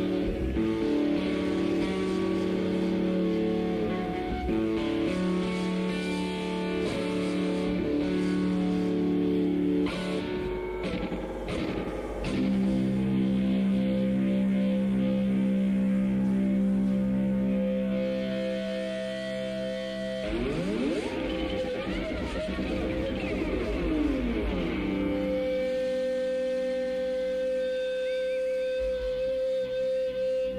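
Electric guitar played through effects pedals, holding droning, distorted sustained notes with no steady beat. About two-thirds of the way through, swooping pitch glides rise and fall over each other, and near the end it settles on one held higher tone.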